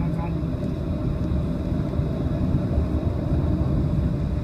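Steady low rumble inside a Boeing 737's cabin as the airliner taxis after landing, engines and airframe running with no sudden changes.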